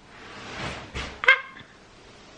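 A soft breathy sound, then a brief high-pitched vocal squeak a little over a second in.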